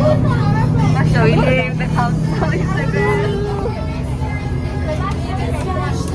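Young voices chattering over the steady low drone of a coach bus's engine, heard inside the bus cabin.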